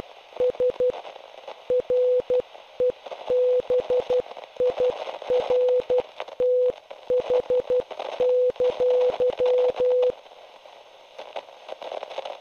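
Morse code sent as a single mid-pitched beep, keyed in quick dots and dashes over radio static with crackles. The keying stops about ten seconds in, leaving only the static.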